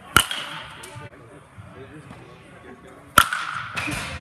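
Baseball bat striking pitched balls: two sharp cracks about three seconds apart, each ringing and echoing in a large indoor hall.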